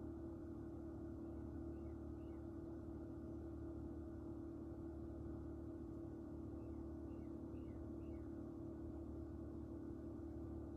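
Steady hum with one constant low tone. Faint short falling chirps sound over it twice: a pair about two seconds in, then four more a few seconds later.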